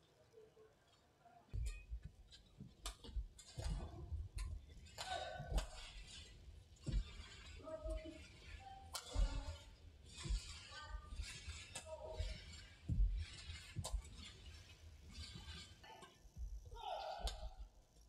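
Badminton rally on an indoor court: rackets striking the shuttlecock in a run of sharp cracks starting about a second and a half in, with players' shoes squeaking and thudding on the court mat between shots.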